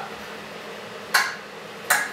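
Powered wheelchair's brakes clicking on as the chair moves and stops: two sharp clicks under a second apart. The sound is the normal safety brake engaging, not a fault.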